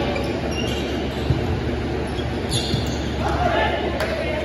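Volleyball rally in a large gym: a few sharp ball contacts in the first half, then players' voices calling out near the end, over a steady low hum of the hall.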